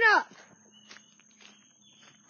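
Faint footsteps on outdoor ground, a few soft steps under a very quiet background.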